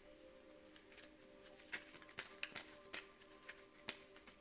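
Soft background music with faint sustained tones. From a little before halfway in, a deck of tarot cards being handled and shuffled makes a run of quick, light card snaps, the loudest near the end.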